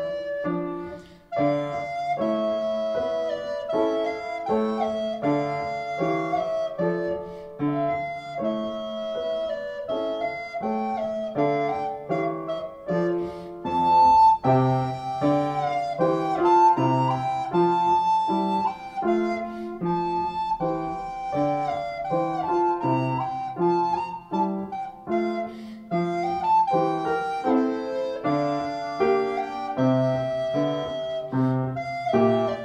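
Alto recorder playing a melody with upright piano accompaniment, with a brief break in the sound about a second in.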